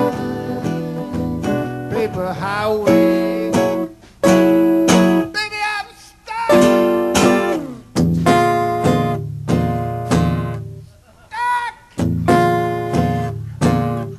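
Instrumental break of a live acoustic song: acoustic guitars strumming and picking, with a sustained lead line and several short stops where the playing drops out before coming back in.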